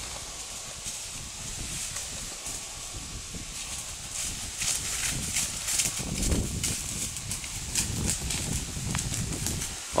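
Hoofbeats of a horse stepping over dry leaf litter and soft dirt: dull thuds with crackling of leaves, louder from about halfway through as the horse comes closer.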